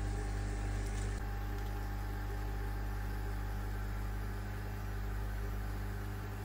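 Steady electric hum with a low drone and a faint hiss of water, typical of a pump running at a koi tank. A brief click about a second in.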